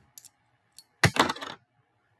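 A quick clatter of small hard clicks about a second in, lasting about half a second, from a small magnet and a silver coin being handled, with a couple of faint ticks before it.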